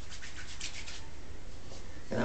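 Hands rubbing oil into hair: a quick run of short, scratchy rubbing strokes in the first second, then one more near the end.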